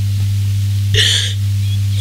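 A crying woman draws one short, sobbing breath about a second in, over a steady low electrical hum.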